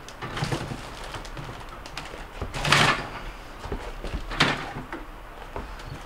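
A wire freezer basket being lowered and settled into a bottom-freezer drawer: a scraping rattle of metal wire near the middle, then a sharp clack about four seconds in as it drops into place, with lighter knocks around them.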